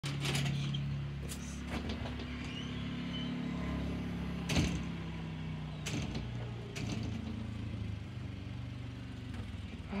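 A steady low hum that shifts pitch about six seconds in, broken by several sharp knocks and handling bumps.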